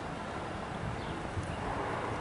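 Steady outdoor background noise, an even hiss with no distinct events.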